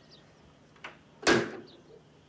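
A desk telephone handset being hung up: a light click, then a louder clunk as the handset lands on its cradle.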